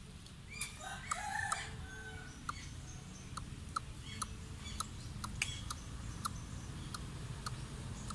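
Birds calling: short, sharp calls repeat irregularly about once or twice a second, with a brief, louder cluster of calls about a second in, over a low background rumble.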